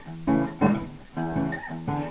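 Acoustic guitar playing a blues fill between sung lines: a handful of chords struck one after another, about two a second, each left to ring and fade.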